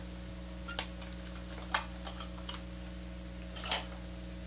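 Guitar amp idling with a steady mains hum and hiss, with a scattered run of light clicks and knocks as an electric guitar is lifted off its stand and its cable moves. The two loudest knocks come just under two seconds in and near the end.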